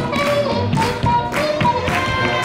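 Hot jazz recording with a clarinet-led melody over a steady swing beat. Dancers' shoes tap and thud on the dance floor along with it.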